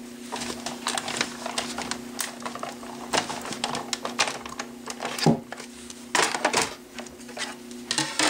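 Hand-cranked Cricut Cuttlebug die-cutting machine pressing a plate sandwich with a cutting die and mulberry paper through its rollers: a run of irregular clicks and knocks from the crank and plates, with the loudest knock about five seconds in.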